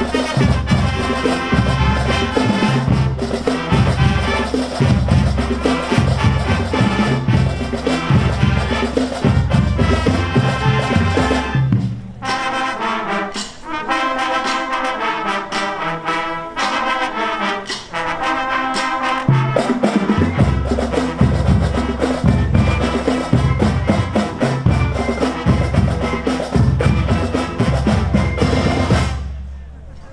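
School marching band playing live: trumpets, trombones, saxophones, flutes and clarinets over a drum beat. About twelve seconds in, the drums and low parts drop out and the higher winds play alone for about seven seconds, then the full band comes back in and the piece ends just before the close.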